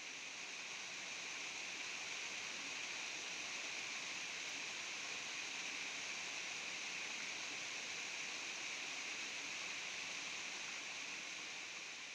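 Small waterfall cascading over rock ledges into a shallow pool, giving a steady rushing of water that eases off a little near the end.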